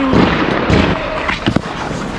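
Ice hockey practice on the rink: several sharp knocks and thuds of sticks and pucks, the loudest near the start, over the steady scrape of skates on the ice.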